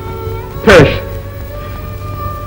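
Sustained background film music with long held notes, broken about two-thirds of a second in by a man's short, falling, choked sob.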